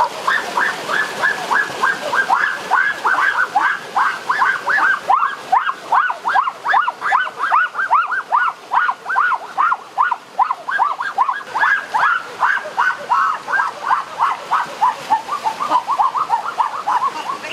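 A bird calling in a rapid, unbroken series of short, high notes, about four or five a second.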